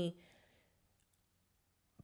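A woman's voice trailing off at the end of a phrase, then near silence: room tone with a faint click or two, and another short click just before she speaks again.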